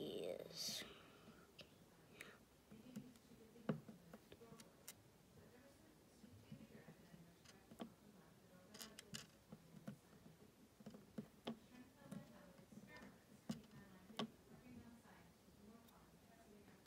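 Light, scattered clicks of small plastic Lego DOTS tiles being picked up from a table and pressed onto the studs of a silicone bracelet, about a dozen faint clicks spread out at uneven intervals.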